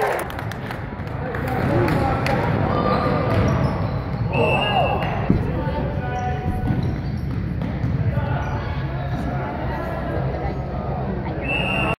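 Spectators talking and calling out in a gym during a youth basketball game, with a basketball bouncing on the hardwood floor. A short, high steady whistle sounds about four seconds in and again near the end, and there is one sharp knock a little after five seconds.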